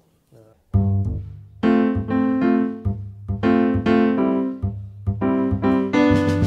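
Backing track for a fusion-shuffle piece starting about a second in: keyboard chords, like an electric piano, played in repeated stabs over a bass line.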